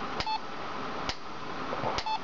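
Handheld EMF ghost meter sounding a short high beep as it picks up the field of a magnetic pulser coil, with sharp clicks about once a second.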